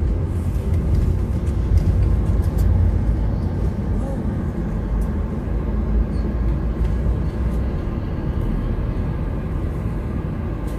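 Steady low rumble of a car's engine and road noise heard from inside the cabin as the car creeps forward in slow traffic.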